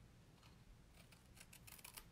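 Faint snipping of small scissors cutting out cardstock leaves, barely above near silence.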